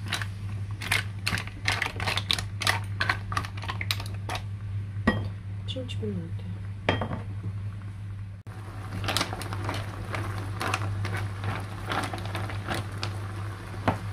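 Mussel shells clicking and clattering against each other and the frying pan as they are stirred in a bubbling wine-and-garlic sauce, in quick, irregular ticks over a steady low hum. The clatter thins out around the middle, where a few words are spoken, and then picks up again.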